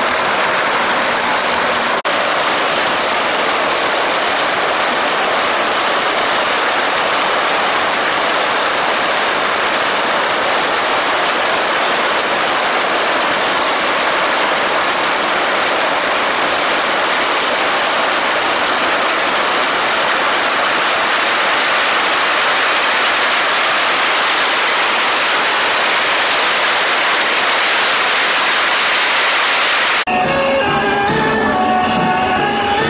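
Long strings of red paper firecrackers going off in a loud, continuous, dense crackle with no breaks.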